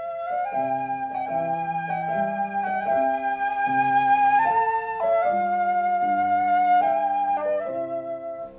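A flute playing a slow aria, held melody notes stepping up and down, over a lower accompanying line of notes.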